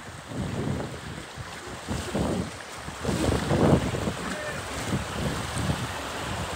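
Shallow rocky mountain stream rushing, with water being splashed by hand in irregular surges, the loudest about three and a half seconds in, and wind buffeting the microphone.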